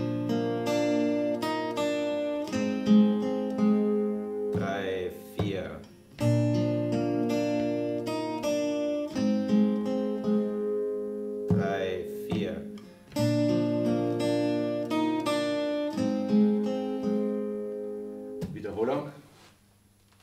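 Steel-string acoustic guitar, capoed at the third fret, played fingerstyle and slowly: a short passage of picked notes over G and F chords, played three times with brief stops between.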